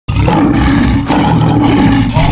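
Lion roar sound effect, loud and rough, starting abruptly with a brief break about a second in before it goes on.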